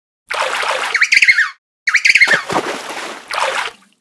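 Water splashing in three bursts, the first two joined by a bird's short, wavering high calls.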